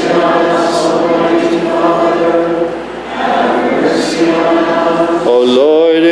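A congregation singing a slow liturgical response together, with a brief pause for breath about halfway. Near the end a single man's voice glides up and begins chanting on a held note.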